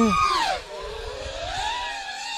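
FPV freestyle quadcopter's electric motors whining, the pitch dropping sharply over the first half-second and then climbing gradually again as the throttle comes back through a Split-S.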